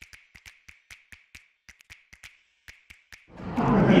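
A rapid, irregular series of light clicks, about five a second, over dead silence. Near the end a man starts shouting.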